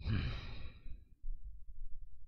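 A man sighs: one breathy exhale of about a second, over a steady low hum.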